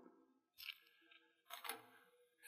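Near silence, broken by two faint, brief handling sounds about a second apart.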